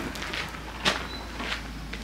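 Footsteps on a worn gravelly lane: a few soft steps of someone walking.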